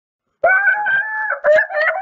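A loud, drawn-out high cry held on a fairly steady pitch, starting about half a second in, with a brief break near the middle.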